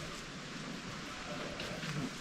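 Steady outdoor background hiss with no distinct sounds in it.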